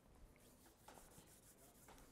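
Near silence: room tone with a few faint rustles.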